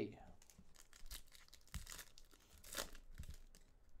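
A Panini Select baseball card pack's wrapper being torn open by hand, with faint crinkling and a few short sharp rips about one, two and three seconds in.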